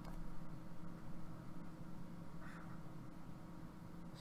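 Quiet room tone: a faint, steady low electrical hum with a few very faint ticks.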